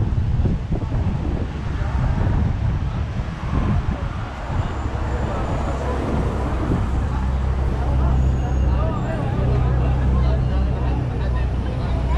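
Street traffic with wind buffeting the microphone and indistinct voices nearby; from about seven seconds in, a steady low engine hum joins as a city bus draws close.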